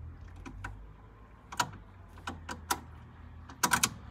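Sharp mechanical clicks from a switch being worked to power up a Mercedes R107 instrument cluster wired to a battery: single clicks through the first part, then a quick run of them near the end. A low steady hum sits underneath.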